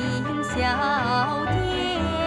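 A Chinese-language song with instrumental accompaniment, the singing voice bending and wavering in pitch about a second in.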